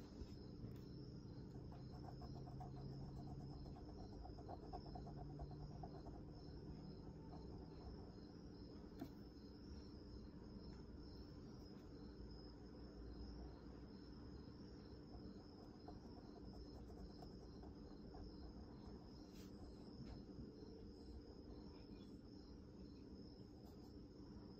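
Near silence: a fine-line ink pen drawing faintly on paper, over a steady high whine and an evenly pulsing high tone.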